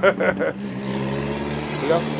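A man's brief laugh, then the steady low hum of a motor vehicle's engine running nearby.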